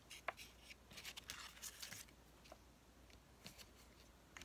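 Faint tabletop handling sounds: a few light clicks and a brief papery rustle about a second in, as a clear acrylic stamping block and ruler are moved and set down on paper and chipboard.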